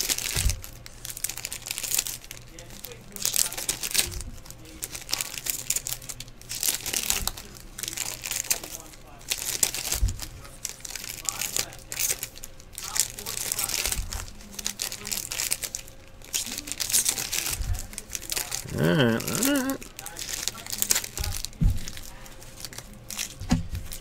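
Trading-card pack wrappers being torn open and crinkled by hand, in repeated bursts, with a few soft thumps as cards are handled on the table. A short wavering vocal sound comes about three-quarters of the way through.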